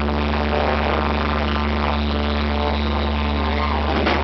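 Live ska band with horns holding one long sustained chord over a steady low bass note, without drum beats, until it breaks off at the end.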